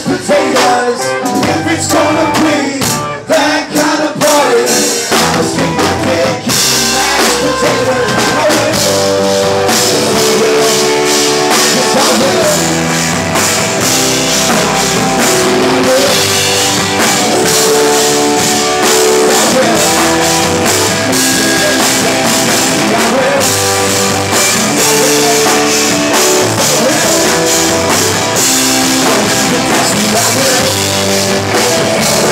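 Live rock band with drums, bass and guitar, with a harmonica played into the vocal microphone, its notes bending, over a sparser beat for the first few seconds. About six seconds in the full band comes in, fuller and steadier, with singing over it.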